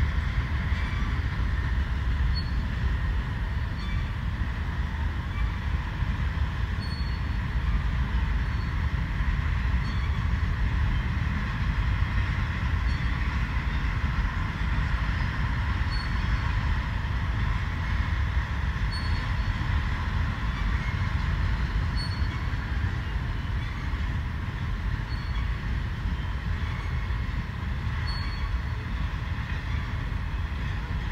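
BNSF mixed freight train's cars rolling past: a steady rumble of wheels on rail, with faint scattered ticks.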